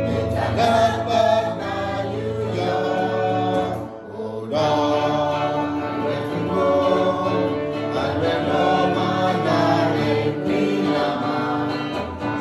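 A mixed group of men and women singing a song together in Karen, with a brief break between phrases about four seconds in.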